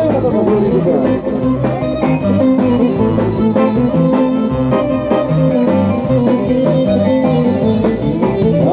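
Live Greek band music played loud, a plucked-string lead line over shifting bass notes.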